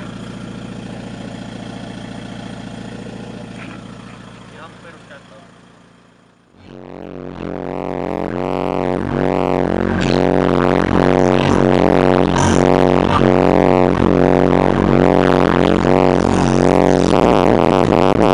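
A steady low hum fades out, then about six and a half seconds in, loud music with heavy bass starts and builds, played through a VW Caddy's system of six SPL Dynamics 15-inch subwoofers driven by four SPL Dynamics 3500D amplifiers.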